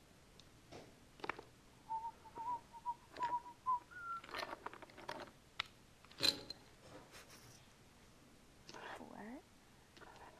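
A person whistling quietly: a short, wavering run of notes about two seconds in, ending on one higher note. Faint taps and murmured voices come around it.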